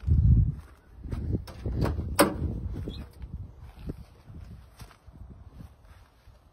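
Door of a 1928 Ford Model A Roadster being unlatched and swung open: a string of clicks and knocks, the sharpest click about two seconds in, after a low rumble at the start.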